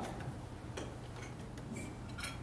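Quiet room tone with a steady low hum and a few faint, light clicks, one with a brief high ring near the end.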